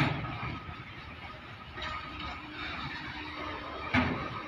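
BTPN tank wagons of a goods train rolling past, steel wheels running on the rails with a faint high squeal, and a loud clank at the start and again near the end.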